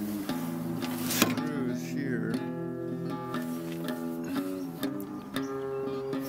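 Background music with acoustic guitar, and a single sharp click about a second in.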